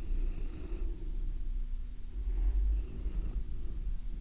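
Domestic cat purring steadily up close, with a brief soft hiss near the start.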